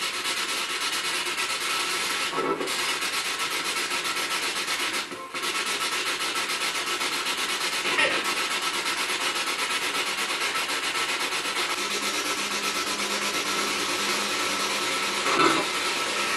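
Spirit box sweeping through radio stations: loud, steady hiss of radio static with a rapid choppy flutter. It cuts out briefly about five seconds in.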